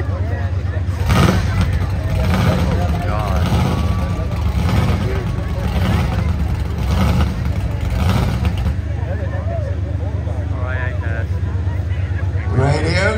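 Monster truck engine running in place, blipped up in short revs about once a second from about a second in, then settling back to a steady idle near the end.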